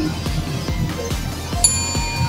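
Pachinko machine's effect music with a fast beat. About one and a half seconds in, a sharp bell-like hit rings on in several clear tones as the screen shatters.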